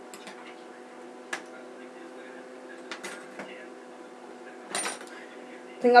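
Light clicks and small clinks of hair tools being handled and picked up, scattered irregularly over a steady low hum; the loudest come about a second in and near the end, the latter a brief rustling click.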